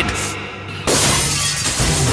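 Glass bangles shattering in a sudden crash about a second in, followed by a long spray of breaking glass, over dramatic film music.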